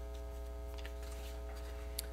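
Steady electrical hum from the audio system: a low drone with a few faint steady tones above it, and a faint click near the end.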